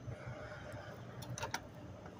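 Faint outdoor background noise with a low rumble, and a few light clicks about a second and a half in.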